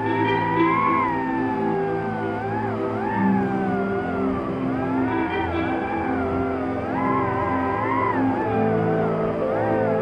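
Background music: a slow, gliding, wavering melody over long held notes, in an ambient style.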